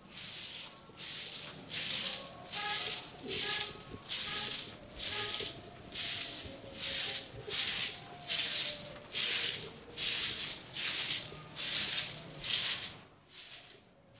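Short-handled bundle broom sweeping sandy ground in steady strokes, a dry swish about every 0.7 seconds, fading near the end.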